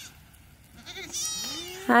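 A goat bleats once, about a second in, a short call lasting under a second.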